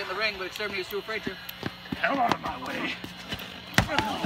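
Men's voices, partly sing-song and wavering in pitch, over a faint steady hum, with one sharp smack near the end.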